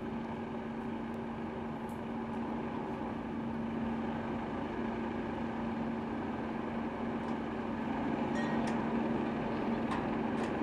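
Steady mechanical hum of launch-site equipment with a constant hiss, and a few faint clicks near the end.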